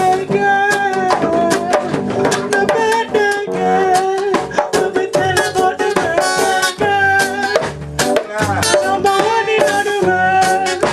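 Loud music with a singing voice over a steady drum beat, with guitar and shaken percussion.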